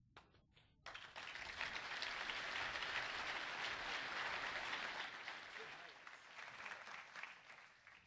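Audience applauding, starting with a few scattered claps and swelling about a second in, then slowly dying away toward the end.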